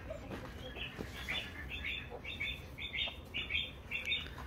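Small birds chirping: a quick run of short, high chirps, a few each second, starting about a second in, fairly quiet.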